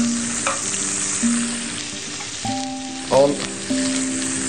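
Mushrooms and tomatoes sizzling steadily in olive oil in a frying pan, with a light clink of a spoon on a plate.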